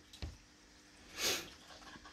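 A short breath, heard as one soft hiss lasting under half a second, with a faint click shortly before it.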